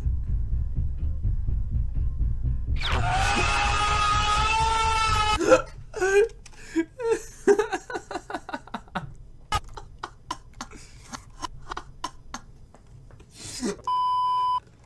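Deep, loud rumbling sound effect with a long high-pitched scream over it from about three seconds in; both cut off suddenly. Short, quiet bursts of a man's chuckling follow.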